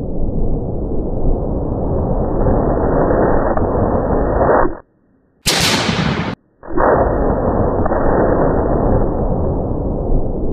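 Slowed-down blast of a Tannerite explosive target: a long, deep, dull rumble with no crisp top. About five seconds in it cuts out, a short sharp hissing burst follows, and after another brief gap the deep rumble comes back.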